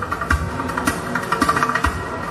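A live band plays percussion-led music: a handpan and hand drums with deep thumps about four times and quick ticking strokes, over a steady held tone.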